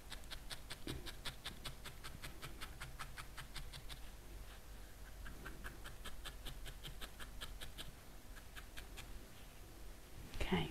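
A single felting needle stabbing repeatedly into wool, a faint, quick, even run of short pricks about five a second, with a brief pause a little before the middle.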